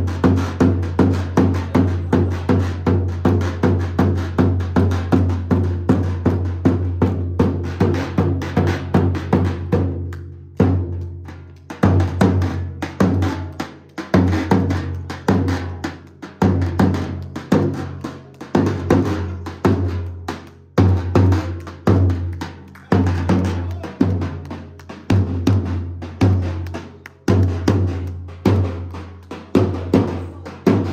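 Davul, the large Turkish double-headed bass drum, beaten with a mallet and thin stick in a steady dance rhythm of about two beats a second. The rhythm breaks off briefly about ten seconds in, then starts again.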